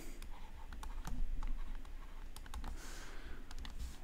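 Light, irregular clicks and taps of a stylus on a tablet screen during handwriting.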